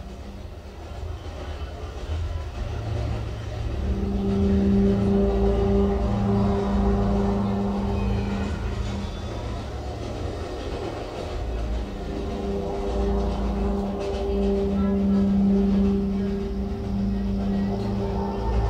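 Experimental electronic laptop music: a dense low rumbling texture, joined about four seconds in by a steady low drone that grows louder and holds, with brief dips.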